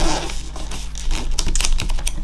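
Hands pressing and smoothing a paper envelope onto a scrapbook page: paper rustling with an uneven run of light taps and clicks.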